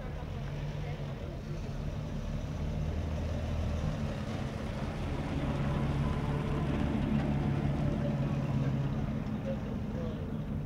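Vintage pickup truck's engine running slowly at low speed as the truck drives past close by, growing louder as it comes alongside.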